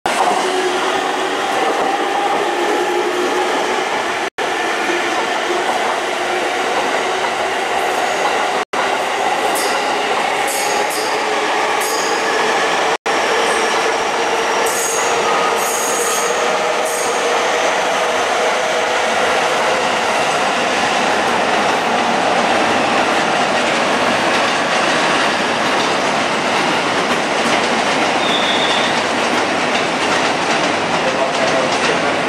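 Electric commuter trains running on the tracks: a steady rumble of wheels on rail, with short high-pitched wheel squeals on and off between about nine and seventeen seconds in. The sound drops out for an instant three times.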